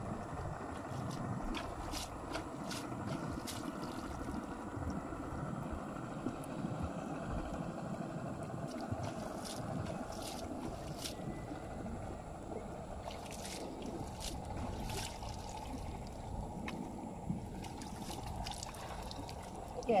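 Shallow water splashing and trickling as a plastic basket of small fish is dipped and rinsed at the water's edge, a steady watery wash with a few faint clicks.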